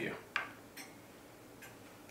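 A grandfather clock ticking faintly, a tick a little under every second, with one sharper click just after the start.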